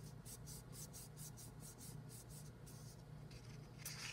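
Hands rubbing and pressing on a folded sheet of paper, a faint, even swishing of about three strokes a second, smoothing it down so the freshly glued paper cut-outs stick to the inside.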